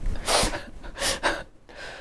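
A person breathing in between sentences: two short breaths, a sharp intake first and a softer one about two-thirds of a second later.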